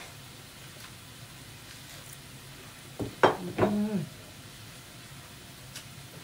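Steady faint sizzling of food cooking on a tabletop grill. A short sharp sound just after the halfway point is followed by a brief sound from a person's voice.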